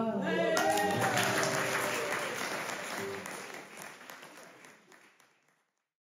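Audience clapping after the song's last note, with a voice calling out briefly at the start; the applause fades away about five seconds in.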